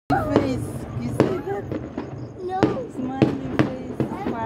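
Fireworks going off: about seven sharp bangs in quick, irregular succession.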